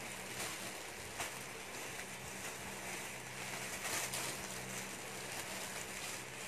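Plastic bags crinkling and rustling as bagged clothes are handled, with a few sharper crackles, over a steady hiss and a faint low hum.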